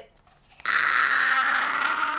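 A woman's loud, breathy, raspy scream that starts about half a second in, after a moment of silence, and is held to the end.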